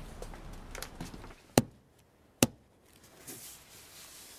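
Two sharp knocks a little under a second apart, each short with no ringing after.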